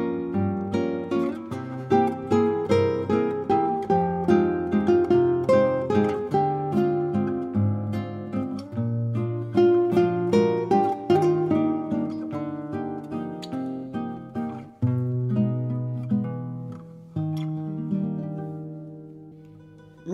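Nylon-string classical guitar playing a song melody note by note over a few bass notes. The last notes, struck about three seconds before the end, are left to ring and fade away.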